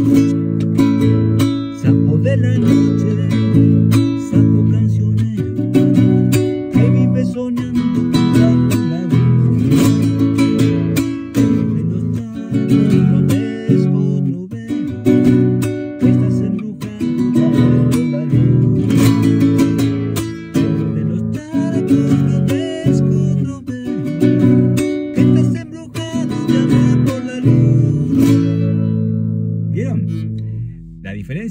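Nylon-string classical guitar strummed in the Argentine zamba rhythm, steady repeating chord strokes mixing the strumming variants of the rhythm. It stops at the very end.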